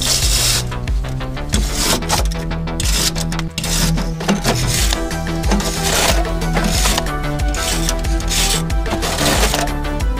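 Background music with a steady beat, over the rasping back-and-forth strokes of a hand wire brush scrubbing dirt and surface rust off a car's metal underside.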